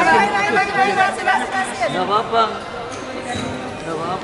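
People talking, several voices chattering at once, louder in the first half and a little softer after about two and a half seconds.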